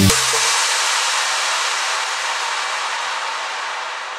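An electronic dance track's beat and bass cut off, leaving a brief low bass tail and then a wash of white noise that slowly fades out as the closing effect of the track.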